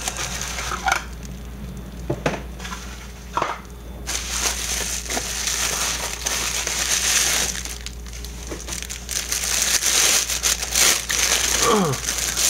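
Bubble wrap and plastic packaging crinkling and crackling as hands unwrap it, with many small clicks. It gets busier about four seconds in and again near the end.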